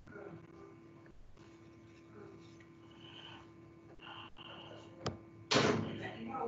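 Open microphone on a video call picking up faint room noise and a steady electrical hum. There is a sharp click about five seconds in, then a short, loud burst of noise on the microphone near the end.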